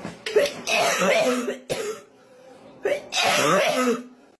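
A person coughing in two harsh bouts, one starting just after the start and another about three seconds in, with a short quieter pause between them.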